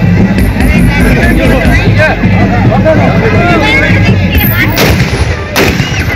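Loud dance music with a heavy beat and crowd voices, with a few loud gunshots fired in celebration near the end, about half a second apart.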